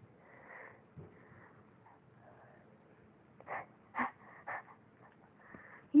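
Quiet breathy sounds from a person close to the microphone, with three brief soft vocal sounds between about three and a half and four and a half seconds in.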